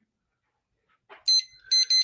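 Two short, high-pitched electronic beeps about half a second apart, starting a little over a second in.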